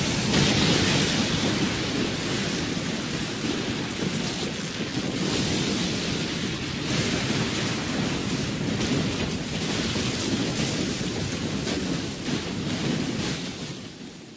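Heavy rain falling, a steady hiss with a deep rumble underneath, fading out over the last second or two.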